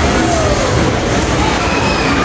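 Family roller coaster train running along its steel track, a loud steady rumble.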